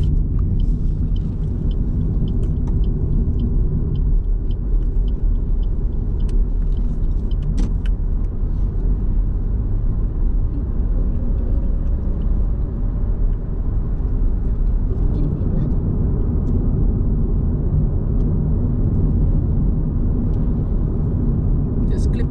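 Steady low road and engine rumble inside the cabin of a moving car, with a few faint scattered ticks.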